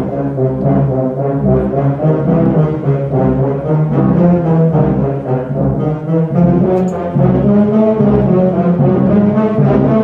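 Concert wind band playing, with brass prominent and the low brass strong underneath, moving through a steady run of changing chords.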